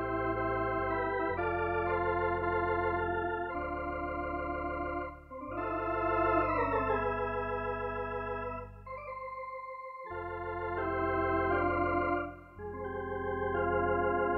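Lowrey Fanfare electronic home organ playing sustained chords with vibrato over steady bass notes, changing chord every second or two. About six seconds in the chord's pitch bends up and then falls away.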